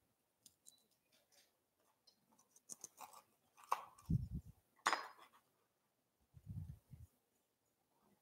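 Faint crackling and crunching of a crisp granola-like snack being broken up by hand, with a couple of sharper clicks and two soft dull thumps on the counter partway through.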